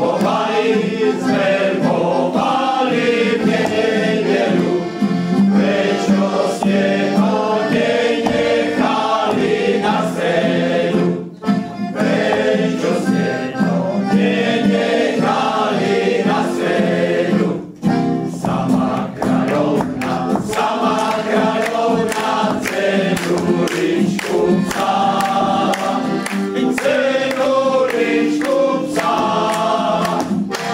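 A men's choir singing a song, accompanied by accordion and acoustic guitar. The music breaks off briefly twice, about 11 and 18 seconds in.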